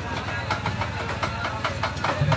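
Busy market-stall ambience: a steady low engine-like hum with background chatter and frequent light clicks and clatter.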